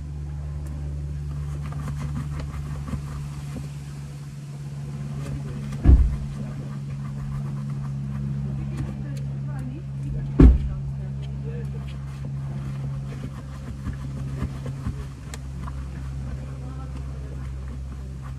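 Steady low hum of an idling car engine, with two heavy thumps, one about six seconds in and one about ten seconds in. Faint voices are in the background.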